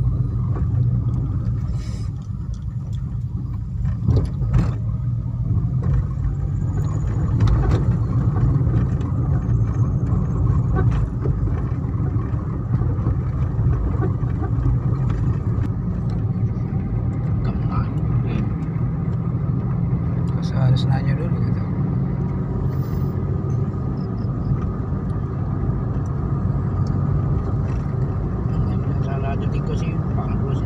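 Car cabin noise while driving: the engine and tyres run steadily, heard from inside the car.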